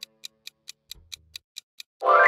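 Countdown-timer sound effect: a clock-like ticking, evenly spaced at about four to five ticks a second, marking the quiz timer running out.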